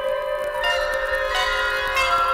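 Orchestral space-age pop music: sustained chords with bright, bell-like notes entering twice.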